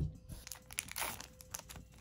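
Foil wrapper of a Harry Potter TCG booster pack crinkling as the cards are drawn out of the freshly cut pack, with a louder rustle about halfway through.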